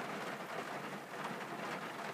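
Steady rain falling, heard as an even hiss.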